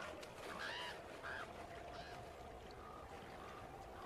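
Faint animal calls: a few short honking calls in the first two seconds, then quieter ones, over a faint steady hum.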